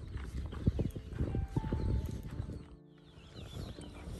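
Footsteps on a dry dirt path: a quick, irregular run of steps that eases off about three seconds in.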